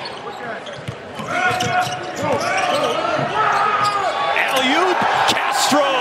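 Basketball being dribbled on a hardwood court during live play in an arena, with voices from the players and crowd around it.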